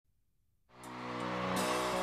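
Silence, then about two-thirds of a second in a live band's sustained opening chord fades in and holds steady.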